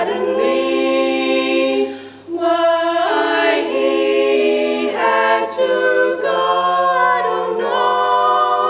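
Female barbershop quartet singing a cappella: four voices in close harmony, holding chords that shift every second or so, with a brief breath break about two seconds in.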